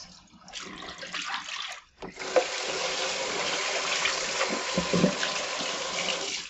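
Water poured out of a plastic basin into a kitchen sink, softer and uneven, then about two seconds in the kitchen faucet is turned on and runs steadily into the sink.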